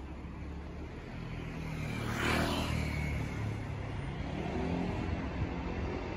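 A car passing close by on the road, its engine and tyre noise rising to a peak about two seconds in and then fading, over a steady low traffic hum.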